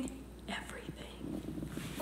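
A woman's faint, breathy voice sounds, without clear words, over low room tone.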